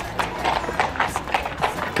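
A steady rhythm of sharp clopping knocks, about four or five a second, like hoofbeats on pavement.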